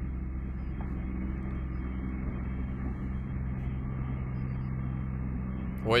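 Steady low engine hum and rumble from a pickup truck towing a horse trailer on an icy road, heard through a camera's muffled, narrow-band microphone.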